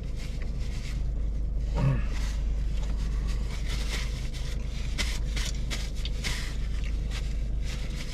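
A paper napkin crinkling and rustling in irregular short crackles as greasy hands are wiped, over a steady low hum inside a parked car. A brief voiced murmur comes about two seconds in.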